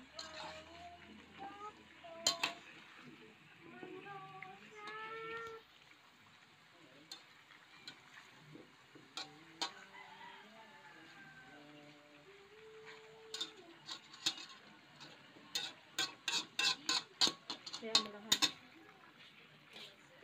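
Spatula scraping and clicking against a wok while stirring pieces of chicken, with a single sharp knock a couple of seconds in and a quick run of clicks in the last third.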